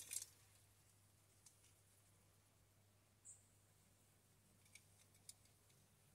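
Near silence with a few faint, small clicks from a snap-off craft knife and a plant stem being handled: one at the start, a tick, a brief high blip about halfway, and a few more clicks near the end.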